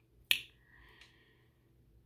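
A single sharp click about a third of a second in, followed by a faint breathy hiss; otherwise quiet.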